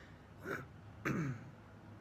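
A man clearing his throat: a short rasp about half a second in, then a longer one falling in pitch just after a second.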